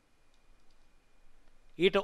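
A pause in a man's speech at a microphone: faint room tone with a thin steady high tone and a few soft clicks, then his voice resumes near the end.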